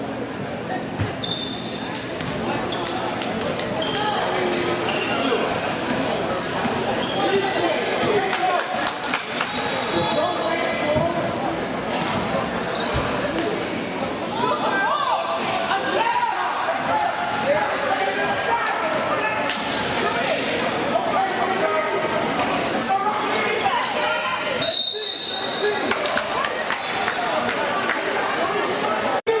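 Basketball dribbled and bouncing on a gym floor, with indistinct shouts and chatter from players and spectators, echoing in a large hall. A few brief high squeals cut through.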